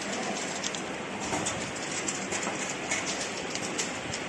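Rotary bottle-feeding table and chain conveyor running with a steady mechanical noise, small bottles clicking and knocking against each other and the guide rails in irregular ticks several times a second.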